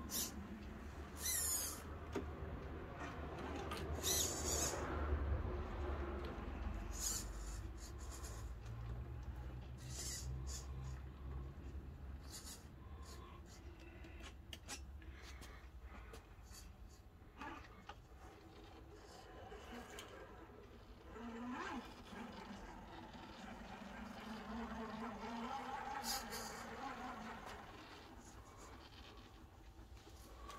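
An Absima Sherpa RC scale crawler's small electric motor and gearbox whining as it crawls slowly over paving and up a wooden plank ramp, the pitch rising and falling with the throttle. Occasional clicks and knocks come from the tyres and chassis.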